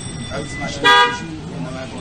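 A vehicle horn gives one short toot about a second in.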